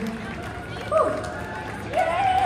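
A voice lets out a short swooping cry about a second in, going up and then falling sharply, over people talking; near the end another voice starts a held, wailing note.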